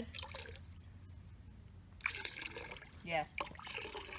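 Vinegar poured in a thin stream from a plastic jug into a bucket of liquid, trickling and splashing. The trickle is heard mainly from about halfway in, when it starts suddenly and stays steady.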